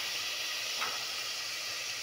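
Diced red onions and garlic frying in refined oil in a steel pot: a steady sizzle as the onions are browned for a tadka.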